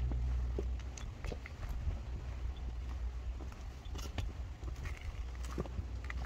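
Footsteps on a dirt path: scattered, uneven soft steps over a steady low rumble.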